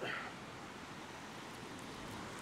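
Steady, faint wash of surf along the beach.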